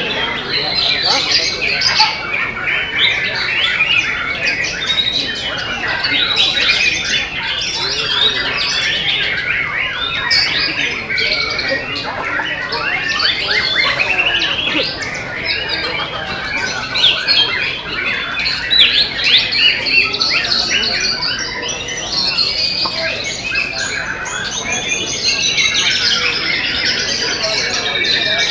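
Several caged white-rumped shamas singing at once: a dense, unbroken mix of rapid whistles, trills and chattering phrases from competing birds.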